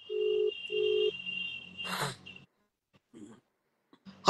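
Telephone ringback tone of an outgoing call: one double ring of two short low beeps, the call ringing at the other end and not yet answered. A short rustle follows about two seconds in.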